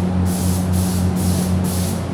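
Spray gun hissing steadily as it sprays paint onto a motorcycle fuel tank, the hiss dipping briefly about twice a second, over a steady low hum.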